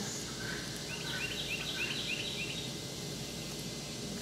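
A bird calling outdoors: a quick run of repeated high chirps, about five a second, lasting under two seconds, over steady outdoor background noise.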